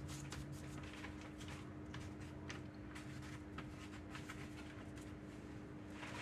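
Faint soft rustles and light taps of hands rolling cookie dough balls in pumpkin pie spice on paper, over a steady low hum.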